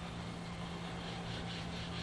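Steady hiss and low hum of an old recording, with faint soft brushing from about a second in as a flat watercolour brush is drawn across the paper laying a wash.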